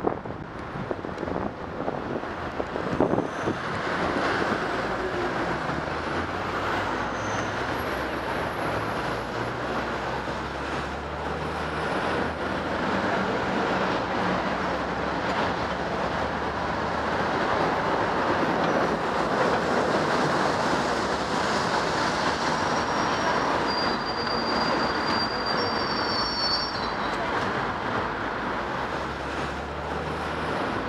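City road traffic heard from a bicycle: wind and road rush while riding, then motor vehicle engines running close by at a junction. A short high-pitched squeal comes about three quarters of the way through.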